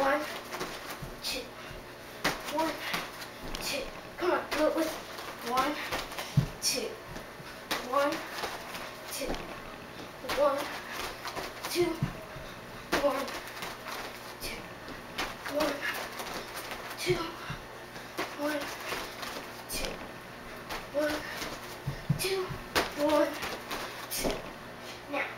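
Jogging footsteps thudding on a carpeted floor, with a few heavier thumps, under a child's voice talking off and on.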